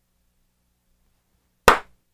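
A single sharp hand clap near the end, after near silence.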